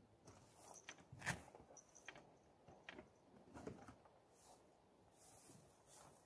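Faint rustling and light knocks of packed camping gear being rummaged through and handled, with one sharper knock a little over a second in.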